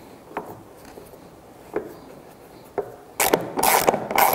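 Socket ratchet wrench driving a lag screw into a pine two-by-three. A few faint clicks come first, then from about three seconds in there are loud, rapid ratcheting strokes.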